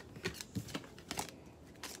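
Deck of cards being handled and shuffled: a few light snaps and slides of card on card, faint and mostly in the first second or so.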